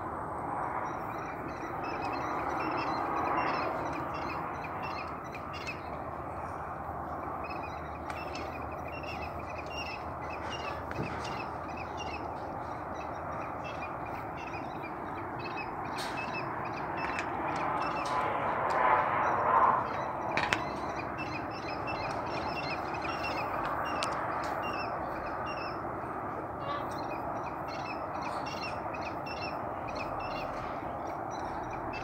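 Harsh, cawing animal calls that run on without a break, growing louder for a couple of seconds about two-thirds of the way through.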